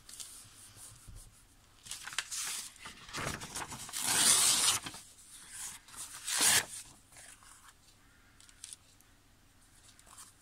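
Old book paper being torn by hand in a few rips. The longest and loudest comes about four seconds in, with a shorter tear about two seconds in and another at about six and a half seconds. Faint paper rustling follows.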